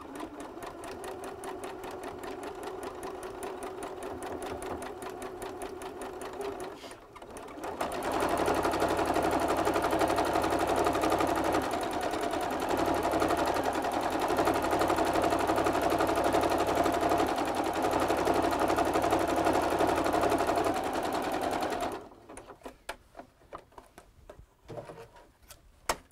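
Electric home sewing machine stitching a zigzag along the edge of knit fabric. It runs softer at first, dips briefly about seven seconds in, then runs louder and steady until it stops a few seconds before the end, leaving only a few light clicks.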